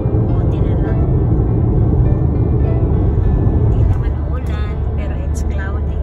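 Steady low road and engine rumble inside a moving car's cabin, with music and a voice over it.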